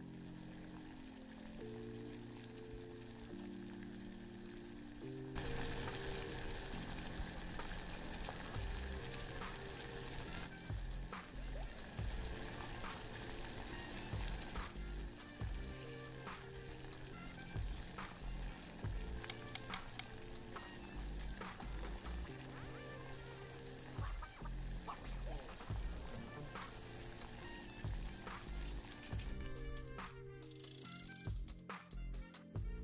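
Background music with a steady bass rhythm, joined about five seconds in by the hissing, bubbling sound of basmati rice boiling in a pot of water, which continues under the music.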